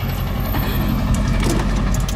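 Pickup truck with a slide-in camper rolling slowly over a sandy road, heard from inside the cab: a steady low engine rumble, with several sharp clicks and knocks in the second half.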